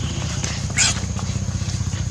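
A baby monkey gives one short, shrill squeal about a second in. Under it an engine runs steadily with a low, even pulsing.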